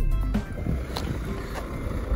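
Background music with drum hits that cuts off about half a second in, followed by a low, steady rumble from a tour coach's engine idling.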